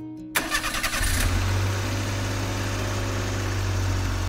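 Car engine starting: a short whirr of the starter for under a second, then the engine catches about a second in and settles into a steady idle.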